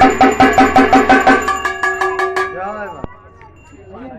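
Traditional folk percussion, a drum with ringing metal percussion, playing a fast, even beat of about five strikes a second that fades out about two and a half seconds in. A voice follows near the end.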